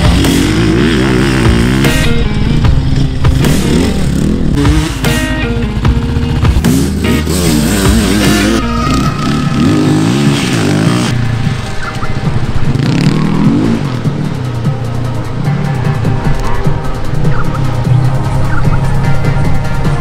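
Enduro dirt bike engine revving up and down over and over as the rider accelerates out of corners and backs off, over a music track with a steady beat.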